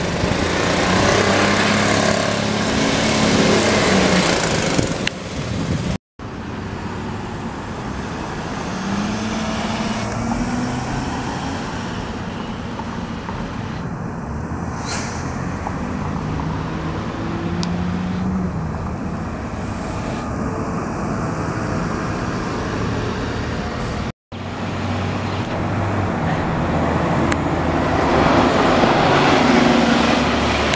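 City transit buses' diesel engines pulling away and accelerating, heard in three separate takes, with the engine pitch rising and falling as they move off and go by. There is a short hiss about halfway through.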